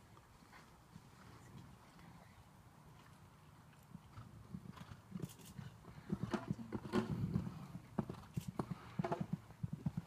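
Horse hooves thudding on a sand arena surface in an irregular run of footfalls, faint at first and louder from about four seconds in as horses come close.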